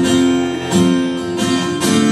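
Acoustic guitar strummed alone, with fresh chord strokes near the start, about three-quarters of a second in and near the end, the chords ringing on between them.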